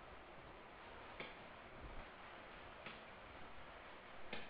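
Near silence: a steady faint hiss with two short faint clicks, about a second in and again near three seconds.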